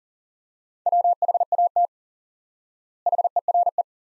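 Morse code at 40 words per minute, sent as a steady mid-pitched beep keyed on and off: two words, WHAT about a second in and the shorter HERE about three seconds in, a second of silence between them.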